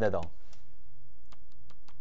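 A handful of light, irregular clicks, about five, mostly in the second half, over a faint steady hum.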